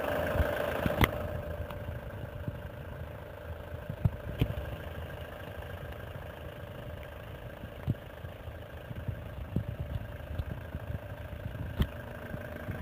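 Ford Transit fire brigade van's engine idling steadily, with a constant hum over the low rumble and a few sharp clicks, the loudest about a second in.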